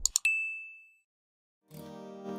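Two quick mouse-click sound effects, then a single notification-bell ding that rings out and fades within about a second. Just before the end, an acoustic guitar chord starts ringing.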